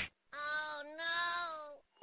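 Domestic cat giving two drawn-out meows at a fairly steady pitch, the second one longer, after a brief break.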